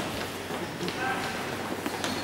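Echoing indoor sports hall ambience: players' footsteps on the futsal court with distant voices in the background.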